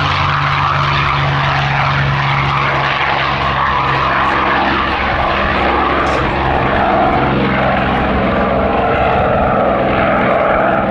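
P-51D Mustang's Packard Merlin V-12 at full takeoff power with its propeller, running loud and steady as the fighter rolls past, lifts off and climbs away. The engine note drops slightly in pitch a few seconds in as the aircraft goes by.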